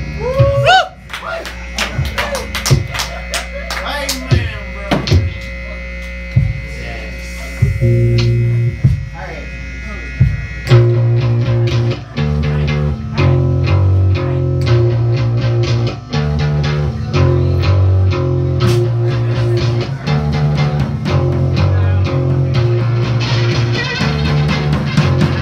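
Live rock band starting a song: an amplifier buzz under scattered drum hits and sliding guitar tones. A low guitar line comes in about eight seconds in, and drums and guitar kick in together at about eleven seconds with a driving, repeating riff.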